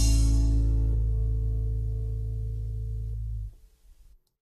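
A band's last chord ringing out and fading, a low bass note held under it, then cut off suddenly about three and a half seconds in.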